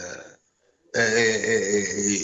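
A man's voice: a phrase trails off into a brief pause, then about a second in he makes a long, steady hesitation sound before going on speaking.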